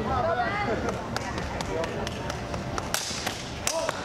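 Steel longswords clashing and binding in a fencing exchange: a quick run of sharp clanks and clicks over about three seconds, the loudest with a brief metallic ring near the end. People talk during the first second.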